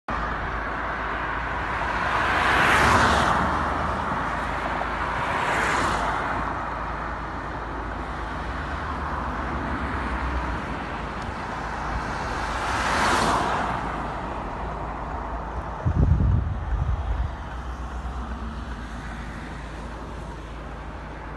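Steady road and tyre noise from a car moving along a dual-carriageway ring road, heard from inside the car. Other vehicles swell past about three, six and thirteen seconds in. A few low thumps come around sixteen to seventeen seconds.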